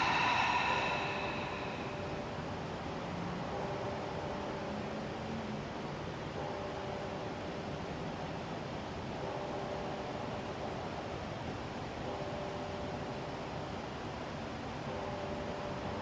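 A long, audible exhale through the open mouth in the first second or so, followed by a steady background hiss with a faint hum that comes and goes every few seconds.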